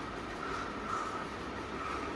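Steady background noise with a faint, even hum and no distinct events.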